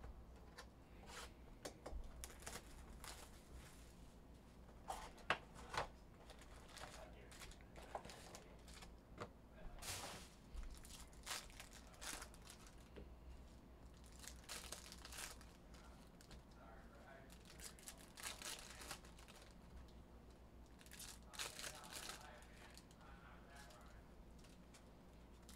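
Foil trading-card pack wrappers torn open and crinkled by hand, in irregular crackling bursts, with a pair of sharp clicks about five seconds in that are the loudest sounds.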